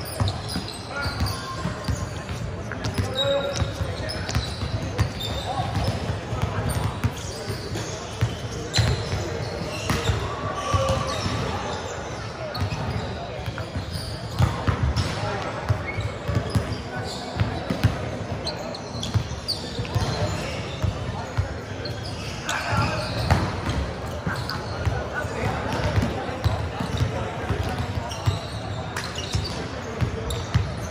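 Volleyballs being struck and bouncing on a hardwood gym floor, many scattered thuds ringing in a large hall, mixed with indistinct voices of players.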